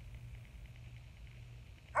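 A pause between spoken lines, holding only a faint, steady low hum of background noise.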